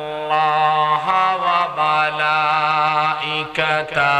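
A man reciting the Qur'an in Arabic in a melodic chant (tilawah), drawing out long held notes with small ornamental wavers and brief breaks for breath.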